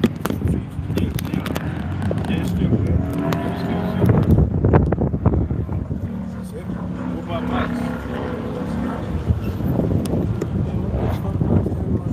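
Indistinct men's voices talking over a steady low rumble of wind on the phone's microphone, with scattered knocks from the phone being handled.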